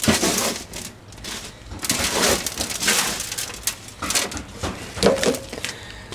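Hands sifting and scrunching through loose compost in a plastic wheelbarrow, a run of irregular crunchy rustles while searching for the last potatoes.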